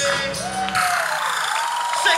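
Dance music playing through speakers, with a sung line; the bass and beat drop out about a second in, leaving the crowd cheering and whooping over a held note.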